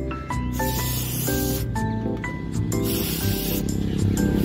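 Background music with a stepped melody, over which an aerosol wound spray hisses in two bursts onto an injured monkey's wound, about half a second in and again near the end.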